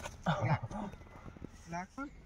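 Short wordless vocal sounds from the trainees: a brief call early on and another short one near the end, with a few light knocks between.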